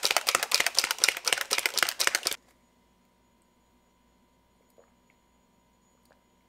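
BlenderBottle protein shaker shaken hard, its whisk ball rattling rapidly against the plastic to break up leftover clumps of whey protein. The rattling stops abruptly about two and a half seconds in, leaving near silence.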